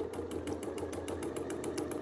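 Sewing machine running unthreaded at a steady speed, its needle punching a line of holes through paper: an even run of needle strokes, about a dozen a second, over the motor's low hum.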